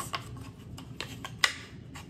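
Small framed signs clicking and knocking against one another as they are handled and fanned out, a few light taps with one sharper knock about one and a half seconds in.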